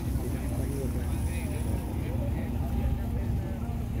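Steady low rumble with faint voices of people talking in the background.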